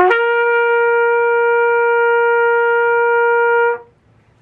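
Trumpet holding a high C as a whole note, one steady tone lasting nearly four seconds and stopping cleanly. The attack scoops briefly up into the pitch before settling.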